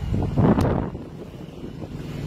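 A gust of wind buffeting the microphone about half a second in, over a low steady rumble.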